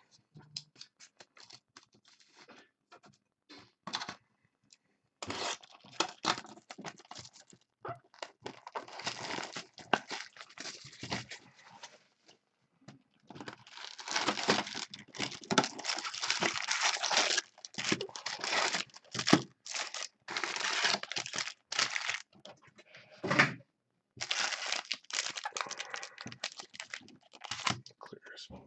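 Plastic shrink-wrap torn and crinkled off a sealed hobby box of trading cards, then the cardboard box opened and its packs handled. It comes as irregular bursts of rustling and tearing, busiest in the second half.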